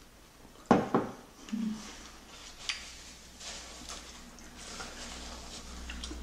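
Someone eating tteokbokki: quiet chewing and mouth sounds, with two sharp knocks close together about a second in, the loudest sounds here, and a few fainter clicks after.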